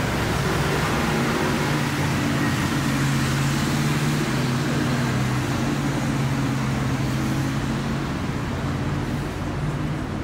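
Street traffic: a motor vehicle's engine running close by with a steady low hum, over the general noise of the road.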